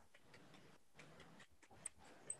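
Near silence, with a few faint ticks and one short click near the end, as a plastic orchid pot packed with pine-bark substrate is handled.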